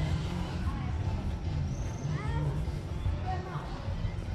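Outdoor street ambience: a steady low rumble with distant voices and faint music, and a few short high chirping calls about halfway through.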